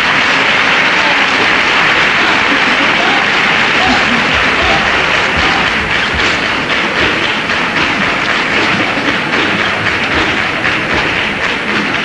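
Theatre audience applauding loudly, with shouts mixed in; about halfway through, the clapping falls into a steady rhythm.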